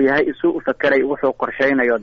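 Speech only: a voice talking continuously in Somali, as in a radio news programme.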